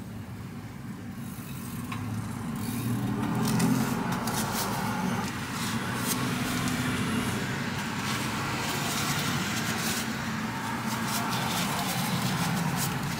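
A steady low motor hum, with crackling, rustling and clicking from about two seconds in as the crepe is handled and folded with gloved hands.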